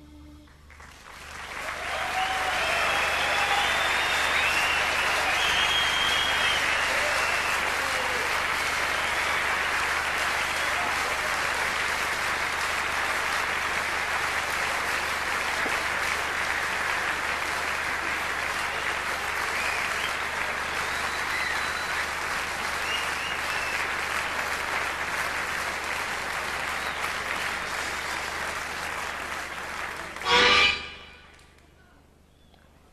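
A large concert audience in a hall applauding and cheering at the end of a blues number. The applause swells up about a second in and holds steady, with shouts and whistles in the first several seconds.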